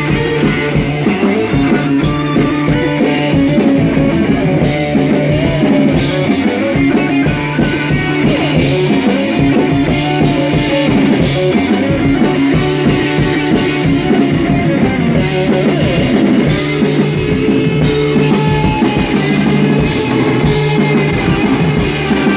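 Live rock band playing at full volume: electric bass and guitar over a drum kit, the drums striking steadily throughout.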